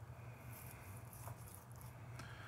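Faint sound of a chef's knife slicing through a cooked steak on a wooden cutting board, with one soft tick about halfway through, over a low steady hum.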